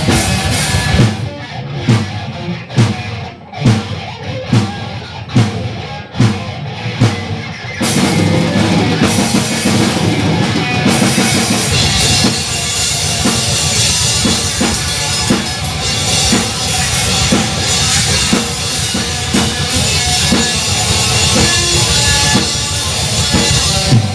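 Live grindcore played by a guitar-and-drums duo: distorted electric guitar and drum kit. For the first eight seconds or so it is stop-start, with loud accented hits separated by short gaps. After that it turns into dense, continuous, very loud playing.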